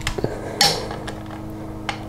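Torque wrench and socket on a brake caliper mounting bolt being tightened to 20 foot-pounds: a few short metal clicks, one just after the start, a stronger one about half a second in and a sharp one near the end. A faint steady hum underneath.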